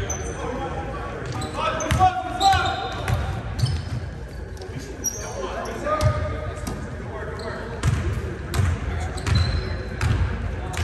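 A basketball bouncing again and again on a hardwood gym floor, with short high sneaker squeaks and players' voices, all echoing in a large gym.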